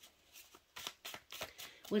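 A deck of cards being shuffled: a run of soft, quick card flicks and rustles.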